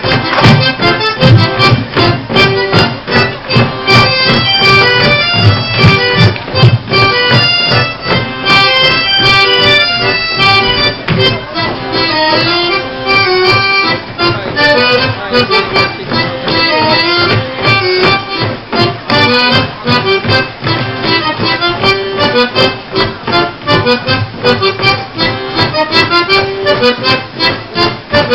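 Polish folk dance music from the Kielce region, with an accordion playing a quick melody over a steady beat.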